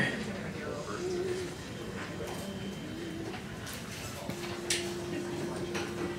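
A quiet room with a few sharp clicks, then, about two-thirds of the way in, a faint steady held note begins as a recording of a four-part barbershop tag starts playing from a laptop.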